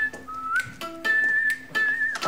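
Background music: a whistled melody of long held notes with one short upward slide, over plucked guitar.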